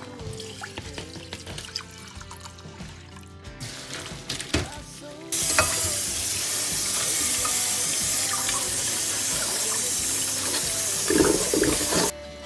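Water rushing into a stainless-steel sink as a pot of boiled greens and their cooking water is drained through a steel mesh strainer under a running tap. The rush starts suddenly about five seconds in and stays steady, over soft background music.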